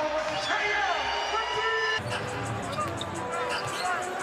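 Arena music plays with fans yelling over it after a made three-pointer. About two seconds in, this cuts to a basketball dribbling on a hardwood court over arena crowd noise.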